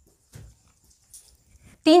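Faint squeaks and scratches of a marker writing on a whiteboard, a few short strokes, then a woman's voice starts near the end.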